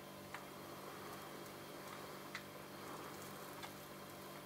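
Quiet room tone with a steady low hum and three faint ticks spread over a few seconds.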